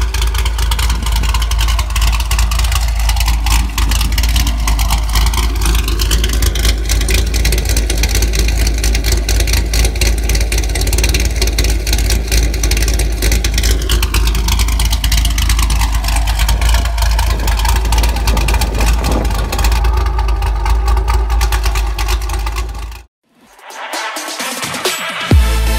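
Cammed 2010 Camaro SS 6.2-litre V8 with long-tube headers, no catalytic converters and a Corsa Xtreme cat-back exhaust, idling with a loud, choppy exhaust note. It is revved up to a higher rpm, held there steadily for several seconds, then drops back to idle. The sound cuts off suddenly near the end.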